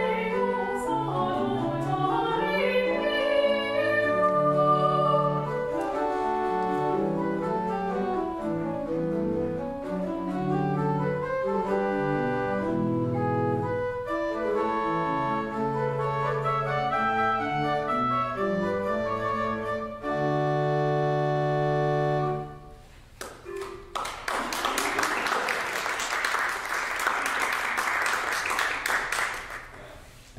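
A woman singing classical music with pipe organ accompaniment, ending on a held chord about 22 seconds in. After a short pause, a small audience applauds for about six seconds.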